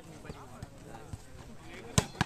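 Volleyballs being struck during warm-up spiking practice: several light thuds, then a loud sharp smack of a spike right at the end.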